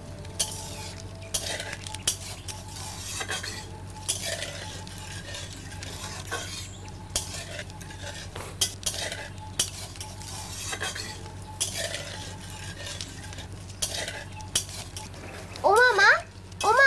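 A metal spatula stirring and scraping in a wok, with repeated ringing clinks against the pan and food frying, over a steady low hum.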